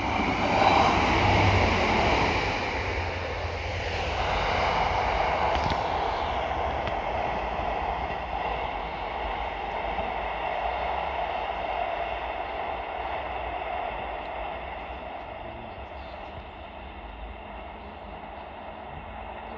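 Two coupled Class 153 diesel railcars running past close by, their underfloor Cummins diesel engines and wheels on the rails loudest in the first few seconds, then fading steadily as the train draws away.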